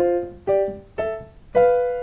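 Piano fifths played one after another up the white keys, four struck about half a second apart, each ringing and fading. The last, held on, is the diminished fifth B–F.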